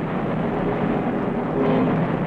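Steady low roar and rumble of a dockside demolition blast and its aftermath, with no distinct bangs, heard on a narrow-band old film soundtrack.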